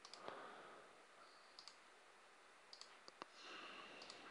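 Several faint computer mouse clicks, some in quick pairs, against near silence.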